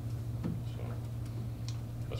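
A steady low hum in a meeting room, with a few light clicks and some faint, indistinct voice sounds.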